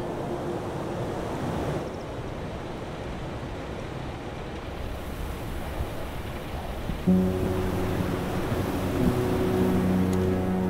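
Wind blowing over open snowy ground, a steady rushing. About seven seconds in, music with sustained low notes comes in suddenly.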